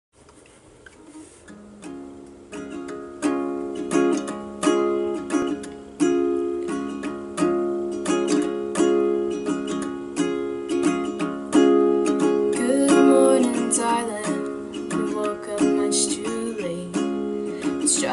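Capoed ukulele strumming a chord progression as a song's instrumental intro, rising from quiet over the first few seconds into a steady rhythm of strums.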